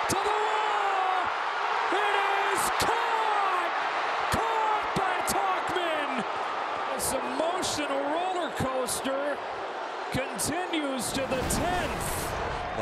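Baseball stadium crowd cheering and yelling at a deep fly ball, with single voices rising and falling above the roar. Near the end a short low rumble comes in.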